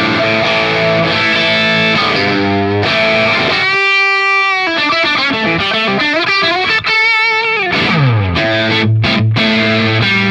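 Electric guitar played through the Big Joe Vintage Tube overdrive pedal with its gain set around six or seven, giving an overdriven, crunchy tone. Chords, then a held single note about four seconds in, wavering bent and vibrato notes, and a slide down in pitch about eight seconds in before chords return.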